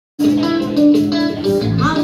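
Live band music with electric guitar, cutting in abruptly just after the start.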